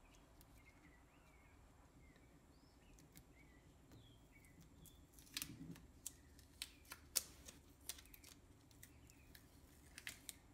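Near silence, with faint short bird chirps in the background through the first half. From about five seconds in come a handful of light clicks and taps as the opened lithium-ion cell pack and its wires are handled.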